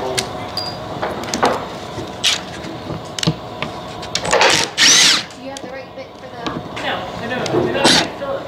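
Red cordless power driver running in short bursts as it drives screws into a wooden frame, its motor giving a steady whine.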